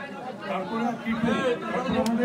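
Speech: a man speaking into a handheld microphone, with other voices chattering.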